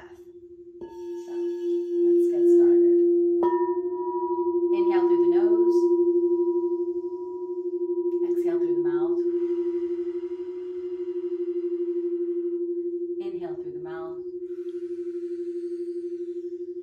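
Crystal singing bowls ringing. One low bowl holds a steady tone that swells and fades in slow waves. Another bowl is touched about a second in, and one is struck about three and a half seconds in, adding higher ringing tones that hold for several seconds. A woman's voice speaks softly over it a few times.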